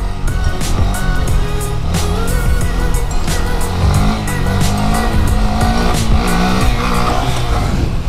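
Stock-exhaust 2018 Honda Grom's 125 cc single-cylinder engine held on the throttle through a wheelie, its pitch shifting in the middle, under background music with a steady beat.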